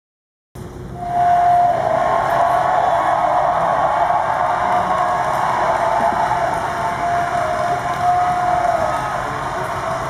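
Theatre audience applauding over orchestra music, relayed from the awards telecast through the press room's loudspeakers. It starts suddenly about half a second in and then runs on at a steady level.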